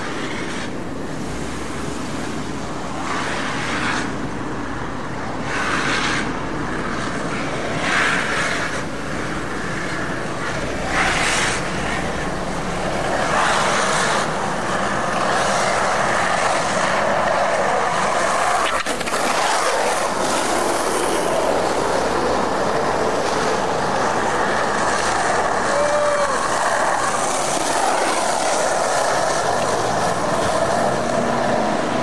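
Skateboard wheels rolling fast on asphalt, a continuous gritty rumble with several louder swells in the first ten seconds, becoming louder and steadier from about thirteen seconds in.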